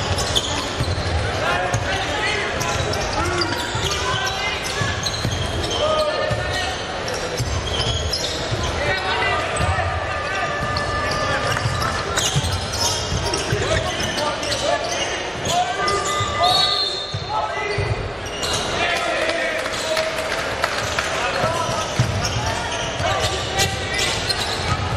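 Sound of an indoor basketball game in a large echoing hall: a basketball bouncing on the hardwood court, with players' and spectators' shouts and calls throughout.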